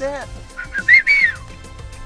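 A brief high whistle in a few short, slightly rising notes about a second in, over quiet background music.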